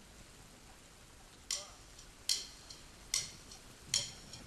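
A drummer's count-in: four sharp, evenly spaced clicks of drumsticks struck together, a little under a second apart, over a faint hiss.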